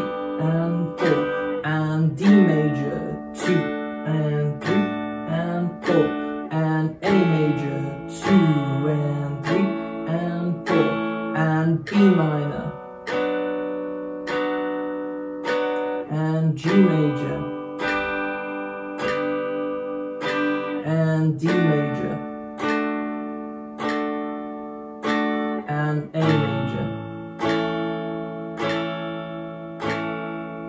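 Semi-hollow electric guitar played clean through a small amp, strumming movable barre-chord shapes in slow, steady time. It cycles through B minor, G major, D major and A major, each chord struck and left to ring between strums.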